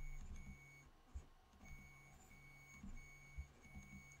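Near silence with a faint whine in short stretches, a low tone and a high tone stopping and starting together, from a CubeX 3D printer's motors running in the background during a print. A faint click about a second in.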